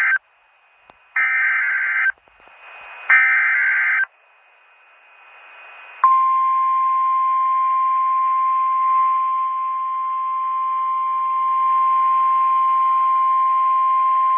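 NOAA Weather Radio emergency alert sequence. It opens with the end of one and then two more short, screechy SAME digital header bursts, about a second each and a second apart, which encode the alert. About six seconds in, the steady 1050 Hz warning alarm tone begins and holds, signalling a warning-level alert.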